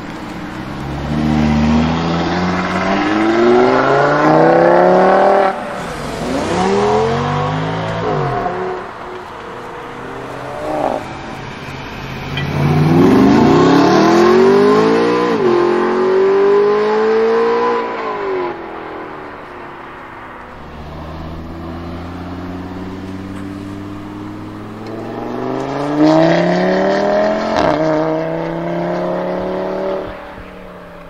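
Several hard accelerations by performance cars: engine notes that climb steeply in pitch and break off sharply at gear changes, with steadier engine sound between them. The first is an Audi RS3 8V's turbocharged five-cylinder engine through its factory sport exhaust.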